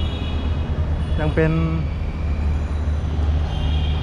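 Steady low rumble of city street traffic with a constant background haze, heard from up on an elevated viaduct deck.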